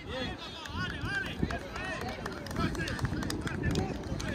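Distant children's voices calling and shouting across the field, over a steady low rumble of outdoor noise.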